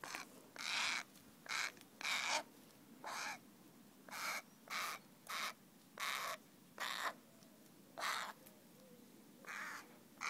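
A crow calling: a series of about a dozen short, harsh caws, coming irregularly every half second to a second or so.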